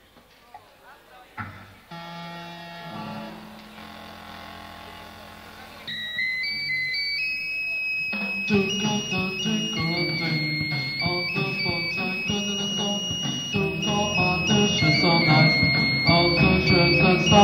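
Live new wave rock band starting a song. A held chord comes in about two seconds in, and a high melody line of stepped notes joins around six seconds. A couple of seconds later the drums and bass enter and the full band plays on, louder.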